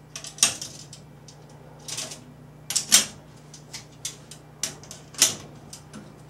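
Thin metal chimera poles clicking and clinking as they are pushed into their slots on the Fresnel lens ring frame: a few sharp metallic taps with quieter handling between, the loudest about three seconds in and again about five seconds in.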